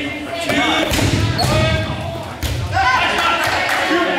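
Rubber dodgeballs thudding and bouncing several times on the gym floor and walls during a dodgeball game, with players shouting in the echoing hall.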